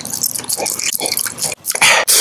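Close-miked mouth sounds of biting and chewing a hard-coated gumball: a run of wet clicks and smacks, with a louder burst of noise near the end.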